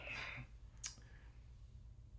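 Quiet room tone with one short, faint click a little under a second in.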